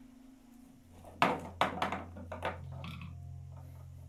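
A wicker basket of old, dried rock-hard lemons being picked up and handled: a few sharp knocks and rustles starting about a second in, the first the loudest, over a low steady hum that begins at the same time.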